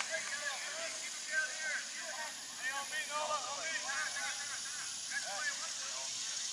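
Distant, indistinct voices of rugby players and spectators calling out across an open field, in short scattered bursts over a steady high hiss.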